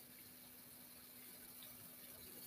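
Near silence: faint room tone with a low, steady electrical-sounding hum.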